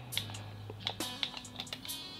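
Faint clicks of the buttons on a Revtech Phantom 220W vape mod as its menu is paged through, with a low steady buzz from the mod's vibration motor in the second half.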